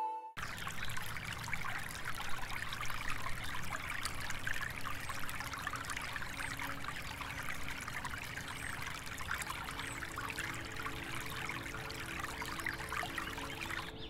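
Water trickling and splashing steadily into a garden koi pond.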